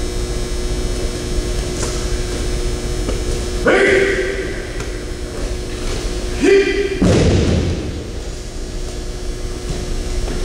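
Two short, loud shouts, one about four seconds in and another about six and a half seconds in. The second is followed at once by a heavy thud of a body hitting the mat in an aikido throw and breakfall. A steady hum lies underneath.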